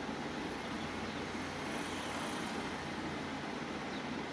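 Steady background noise, an even hum and hiss with no distinct events.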